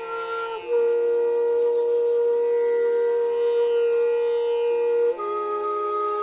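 Hotchiku (root-end bamboo end-blown flute) playing one long, breathy held note that slides up into place about half a second in, then moves to a new note about five seconds in. A steady drone runs underneath throughout.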